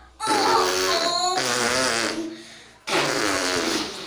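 Two long fart noises, each lasting about a second, one just after the start and one near the end.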